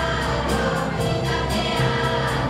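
A school choir singing over an ensemble of classical guitars, which strum a steady beat of about three strokes a second.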